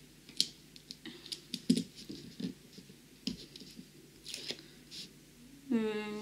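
Craft knife (cutter) lightly scoring the protective paper cover of a diamond-painting canvas, pressed just hard enough to cut the paper: scattered small scratches and sharp clicks, the loudest about a second and a half in.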